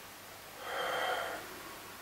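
A man's single audible breath through the nose, about a second long, as he comes out of a seated meditation.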